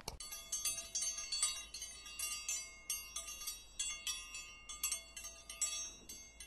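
Tinkling wind-chime sound effect: many high, bright struck tones overlap and ring on, several strikes a second.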